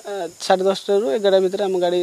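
Only speech: a man talking at normal conversational pace, with brief pauses between phrases.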